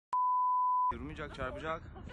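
A steady electronic beep at one pitch, like a reference test tone, lasting just under a second and cutting off sharply, followed by faint voices.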